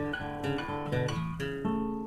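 Acoustic guitar played solo: plucked chords and single notes struck a few times a second, each left to ring into the next.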